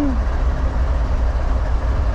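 Norfolk Southern GE diesel locomotives standing and idling close by: a steady, deep engine rumble that does not change.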